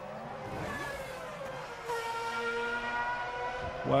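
Formula 1 car's 2.4-litre V8 engine running at high revs with a high-pitched scream, its pitch dipping briefly and then holding steady.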